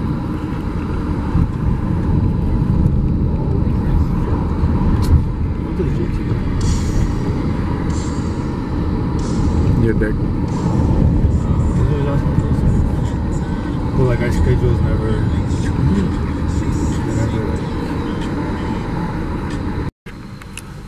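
Steady road and engine noise of a moving car, heard from inside the cabin, with faint voices underneath.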